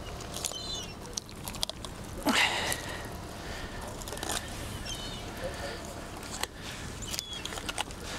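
Fillet knife cutting along a cod's backbone and through its belly bones, with irregular small crunches and clicks and one louder rasping scrape a little over two seconds in.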